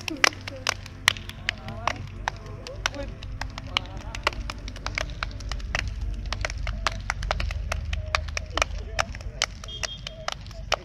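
Many people clapping hands together in pairs, a quick irregular run of sharp claps, with voices in the background.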